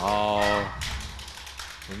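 A man's drawn-out exclamation on one held vowel, then about a second of soft, irregular taps.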